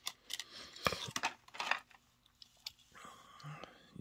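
Thin protective plastic film crinkling and clicking as it is peeled off a small diecast toy car, a scatter of sharp little crackles, then a softer rustle near the end.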